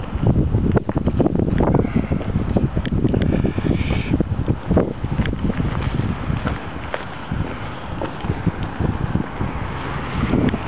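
Wind rumbling on a hand-held camera's microphone, with irregular rustling and handling knocks throughout.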